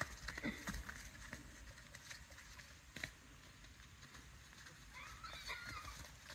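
Faint, scattered hoof thuds of a pony and a foal moving on wet sand footing, a few in the first second and another about three seconds in.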